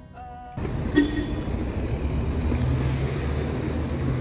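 Street traffic ambience: a steady hum of road traffic and engines that begins abruptly about half a second in, after a short quiet stretch with faint music.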